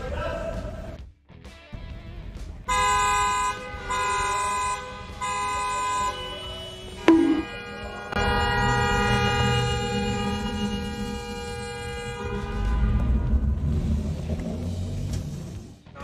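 Car horns honking in a road tunnel at traffic held up by a stopped car: several short blasts, then one long blast held for about four seconds. Idling traffic rumbles underneath.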